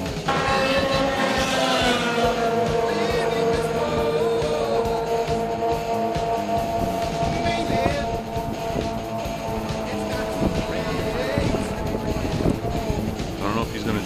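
Snowmobile engine held at high, steady revs as the machine skims across open water. Its pitch dips slightly about two seconds in, and the sound fades after about eight seconds.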